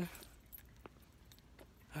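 A few faint, light clicks and clinks over a quiet background.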